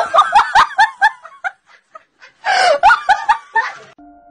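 A person laughing hard in quick, short bursts that trail off after about a second and a half, then a second bout of laughter about two and a half seconds in.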